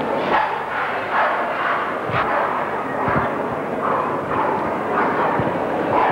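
Staffordshire Bull Terriers barking repeatedly, roughly once a second, over a steady background din of the hall.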